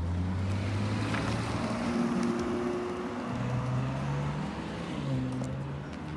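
A car driving past on the road: a rushing tyre and engine noise that swells in the first couple of seconds and fades toward the end, over slow, low background music.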